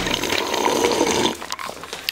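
Water running from a refrigerator door dispenser into a glass, a steady splashing rush that stops about a second and a half in.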